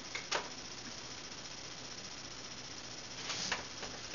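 Quiet room tone with a steady low hum and hiss, broken by a short click shortly after the start and a few breathy puffs near the end: a boy's stifled, nearly silent laughter.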